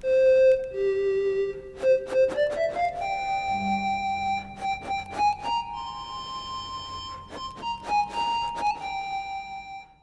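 iPhone Ocarina app played by blowing into the phone's microphone and fingering the touchscreen, its synthesized flute-like tone coming through small wrist-worn speakers. A melody of held notes that dips, then climbs step by step to a higher register and stays there, with a lower tone sounding under it for a few seconds in the middle.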